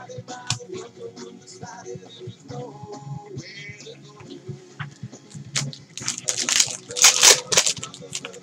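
A trading-card pack's plastic wrapper being torn open and crinkled by hand, loudest over the last two seconds, after a few light clicks of cards being handled. Quiet background music plays throughout.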